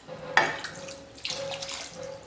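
Water poured from a small steel cup into thick curry gravy in a pan, splashing as it lands, with a sharp splash about half a second in.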